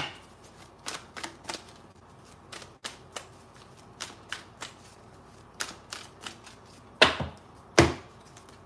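A deck of cards being shuffled by hand: scattered soft clicks and card slaps, with two louder slaps near the end.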